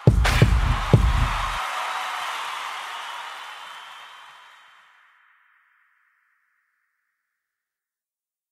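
Closing hit of a hip-hop beat: a deep bass boom with a crash that rings and fades away over about five seconds.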